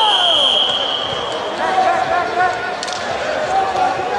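A referee's whistle blown once in a long, steady, high blast lasting about a second and a half, followed by shouting voices of players and spectators.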